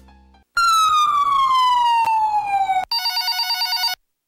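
Siren sound effect: a loud wail sliding down in pitch for about two seconds, then a rapid warbling tone for about a second that cuts off suddenly.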